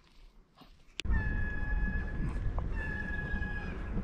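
After about a second of quiet, wind rushes over the microphone of a moving bicycle. Over it come two long, steady high-pitched whines of about a second each.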